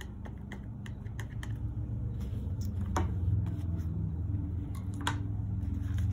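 Metal palette knife mixing paint with textile medium on a plastic lid palette: a quick run of light clicks and taps of the blade on the plastic for the first second or so, then single clicks about three and five seconds in. A low steady hum runs underneath.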